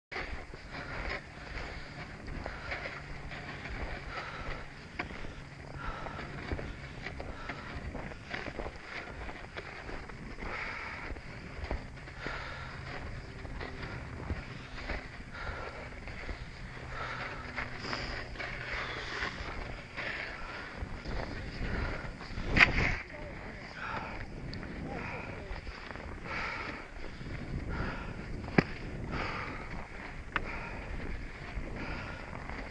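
Footsteps crunching through deep snow in a steady walking rhythm, heard from a helmet camera, with indistinct voices. A sharp knock comes about two-thirds of the way through, and a smaller one near the end.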